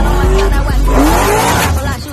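Car engine revving hard during a burnout, its pitch climbing in two rises, the second longer, with a steady bass beat underneath.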